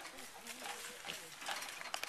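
A group of piglets grunting at a chain-link fence, with scattered clicks and rustles and faint talk mixed in.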